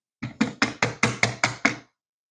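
A quick run of about eight knocks, roughly five a second, stopping just before the end.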